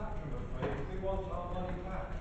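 Speech: a voice talking in the debate, over a steady low rumble of room and recording noise.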